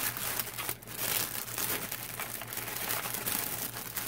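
Clear plastic bag crinkling as it is handled, the small plastic bags of diamond-painting drills inside it rustling along. It is an uneven, continuous rustle with a couple of brief dips in the first second.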